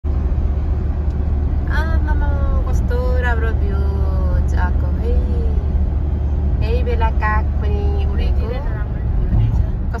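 Steady low rumble of engine and road noise inside a moving car's cabin, with a person's voice heard over it in two stretches.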